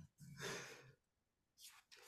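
A man's soft breathy exhale, like a sigh or the tail of a quiet chuckle, about half a second in, followed by near silence.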